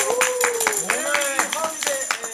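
Several people clapping their hands quickly, several claps a second, with voices calling out over the claps.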